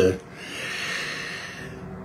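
A man's long in-breath between phrases: a soft, even hiss lasting about a second and a half.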